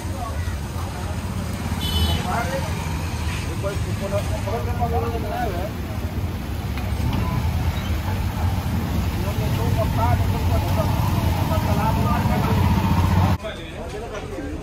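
A motorcycle engine idling close by, a steady low rumble, with unclear voices of people around and passing street traffic. A short high beep comes about two seconds in, and the engine sound cuts off shortly before the end.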